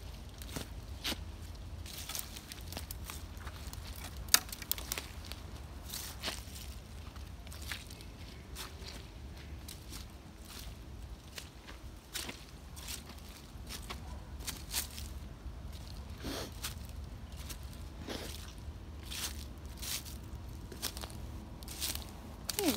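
Footsteps crunching through dry fallen leaves and twigs: irregular crackles and snaps, with one sharper snap about four seconds in.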